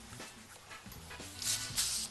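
Two short rasping rubs about a second and a half in, as hands slide and press over the worktop, flattening a piece of soft biscuit dough.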